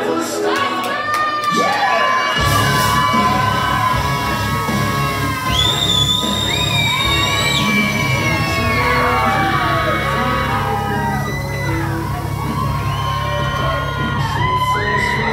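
Wrestler's entrance music over the venue's sound system, a heavy bass beat coming in about two seconds in, with the crowd cheering, shouting and whooping over it.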